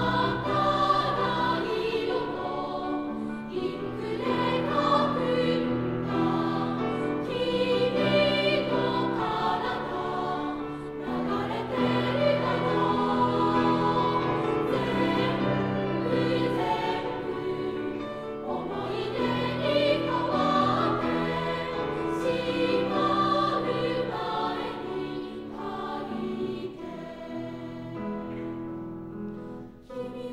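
A massed children's choir singing in harmony, holding long sustained notes, a little softer over the last few seconds.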